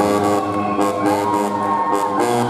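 Guggenmusik carnival brass band playing live: brass holding loud sustained chords over drums, with regular cymbal strokes.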